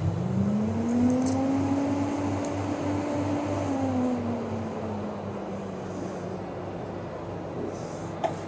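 Carpigiani 161 T G SP soft-serve machine running while soft serve is drawn from its dispensing handle. Its motor note rises in pitch about a second in, holds, and sinks again after about four seconds, over a steady low hum.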